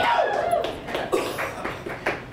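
Audience reaction to a punchline: short yelping calls from the crowd with a few scattered claps.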